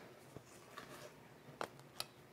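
Almost silent, with a few faint, short clicks of a silicone spatula knocking as creamy filling is scraped from a stainless steel mixing bowl into a pie crust. The clearest click comes about one and a half seconds in.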